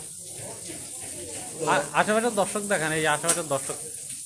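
A man's voice talking for about two seconds in the middle, over a steady high hiss.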